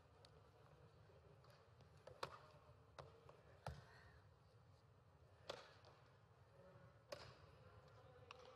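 Near-silent hall with about five faint, sharp knocks spread over several seconds, the clearest a little past two seconds and about five and a half seconds in.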